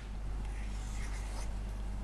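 Whiteboard marker drawing on a whiteboard: faint, scratchy strokes of the felt tip across the board, over a low steady hum.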